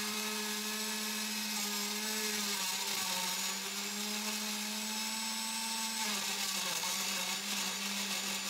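Countertop blender motor running steadily, puréeing melon chunks with water and sugar. Its pitch sags slightly a couple of times as the load changes.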